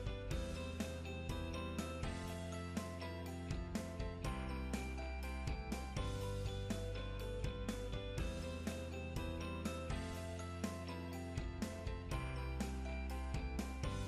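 Background music with a steady beat of sharp, ticking percussion over sustained tones and a bass line.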